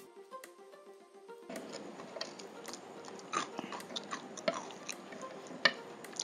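A person chewing food close to the microphone, with many short wet mouth clicks and smacks. Background music with steady notes fades out about a second and a half in, just before the chewing sounds come up.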